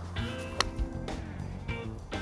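Background music with steady tones, and about half a second in a single sharp click as a golf iron strikes a ball off a practice mat.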